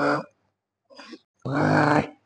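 A man grunting with effort as he presses a barbell on a flat bench. One grunt ends just after the start, a faint breath follows, and a longer strained grunt comes about a second and a half in.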